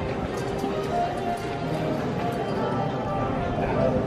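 Airport terminal ambience: indistinct chatter and footsteps on a hard floor, with music playing.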